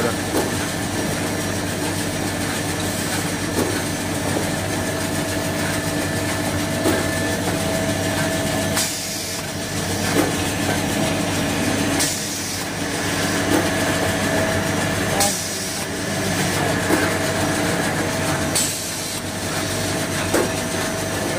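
Automatic jumbo-roll toilet paper cutting machine running with a steady mechanical hum. In the second half a short hiss comes about every three seconds.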